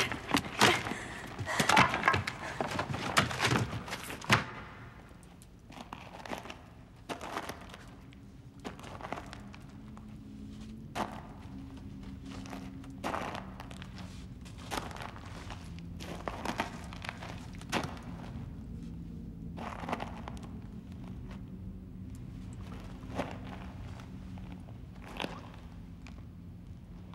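Wooden planks knocking and clattering in a quick flurry for the first four seconds or so as they are pushed and shifted, then single wooden knocks and footsteps every second or two over a low steady hum.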